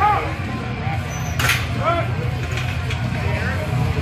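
Spectators and spotters shouting short, loud calls of encouragement to a powerlifter straining up out of a heavy squat, over a steady low hum. A brief sharp noise cuts through about a second and a half in.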